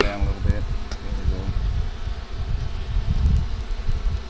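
Honeybees buzzing around an open hive, one flying close to the microphone in the first second and a half, over a low rumble.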